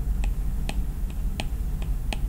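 Light taps on an iPad's glass screen: about five short clicks at uneven spacing, over a low steady hum.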